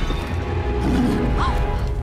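Film soundtrack: dramatic orchestral music over a loud, heavy low rumble, with a sharp crash just as it begins.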